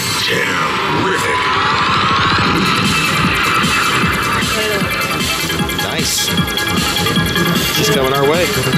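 Colossal Wizards video slot machine playing its electronic big-win music while the credit meter counts up, a busy run of tones with many rising glides.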